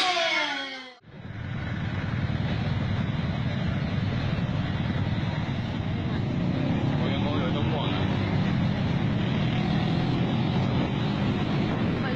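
A brief voice cuts off abruptly about a second in, then the steady running noise of a motor scooter under way takes over, heard from the rider's seat: engine and road rumble with air rushing past.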